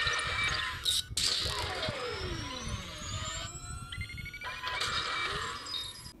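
Electronic intro music with sci-fi sound effects: whooshing bursts, a falling pitch sweep about a second in and a slowly rising tone, stopping abruptly at the end.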